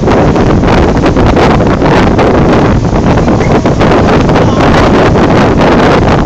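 Loud wind buffeting the microphone on the open deck of a boat, a dense, rapidly fluttering noise with no break.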